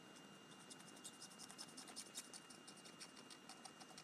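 Faint scratching of a felt-tip Distress marker scribbled across the surface of a rubber stamp, in quick, uneven strokes.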